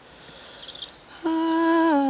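A voice humming a slow, wordless melody. It comes in loudly about a second in, holding long notes that step down and then back up in pitch.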